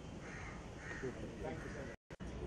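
A bird cawing twice in quick succession, two harsh calls about half a second apart, over faint crowd murmur.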